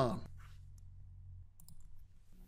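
A few faint computer mouse clicks near the end, clicking the Run button.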